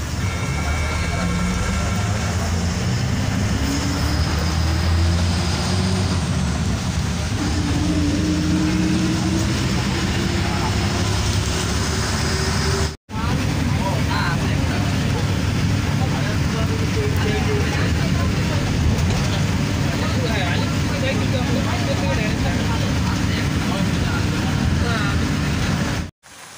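Engine and road rumble of a moving road vehicle, heard from inside the cabin. The engine's pitch rises slowly as it gathers speed through the first half. After a brief break about halfway, the rumble carries on steadily.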